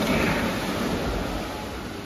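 Children jumping into an indoor swimming pool: a splash right at the start, then splashing water that slowly fades as they swim off, echoing in the pool hall.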